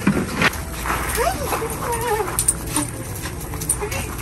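Dog whining excitedly, a short wavering whine about a second in, with scattered clicks of claws on the ramp as it comes down.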